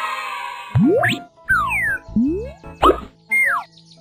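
Children's background music with cartoon sound effects. A shimmering sound fades out in the first second, then a run of quick sliding-pitch boings follows, about five of them, some rising and some falling.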